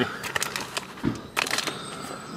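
Handling noise: soft rustles and small knocks as things are moved about in a van's storage compartment, with a dull low thump about a second in.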